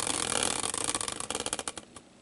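Caster wheel spun as a prize wheel, whirring on its bearing as it coasts down, then ticking at a slowing pace until it stops just before the end.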